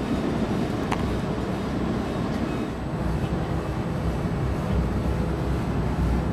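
Steady running rumble of a moving Amtrak passenger train, heard from inside the coach, with a brief click about a second in and a faint steady hum joining about halfway through.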